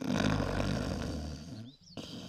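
A person's exaggerated, comic snore: one long rasping rumble that fades out about a second and a half in.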